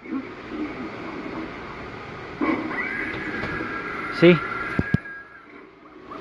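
Life-size Pennywise Halloween animatronic set off and playing its recorded sound track through its built-in speaker. A loud sound starts suddenly about two and a half seconds in and holds a steady high pitch for nearly three seconds before stopping.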